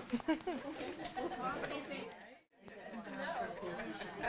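Many people talking at once in a room: overlapping audience chatter with no single clear voice, cut off briefly by a sudden gap about two and a half seconds in.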